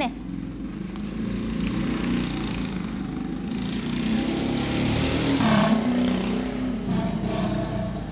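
Steady rumble of a motor vehicle engine, swelling about halfway through and easing near the end, with a faint rustle of a stiff paper pattern being folded and smoothed by hand.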